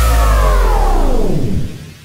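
Electronic soundtrack music: a deep bass hit followed by a synthesizer sweep that falls in pitch and fades out over about a second and a half.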